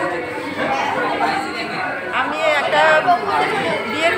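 Several people talking at once in a busy room: overlapping chatter, with one voice standing out more clearly about halfway through.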